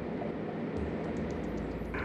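Steady drone of a floatplane's engine and propeller heard from inside the cabin in flight, with a constant low hum under an even rush of air noise.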